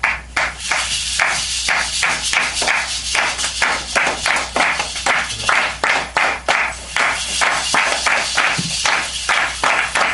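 Rhythmic hand clapping in an even beat, about three to four claps a second, over a continuous high jingling or shaking haze of percussion.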